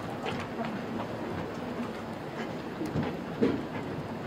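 Handling noise from a handheld wireless microphone being passed from one person to another: low rubbing and faint scattered knocks, with a small bump about three seconds in.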